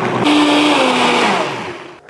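Countertop blender running at speed, blending a thin liquid chili sauce, then switched off: its motor winds down, the pitch falling and the sound fading away near the end.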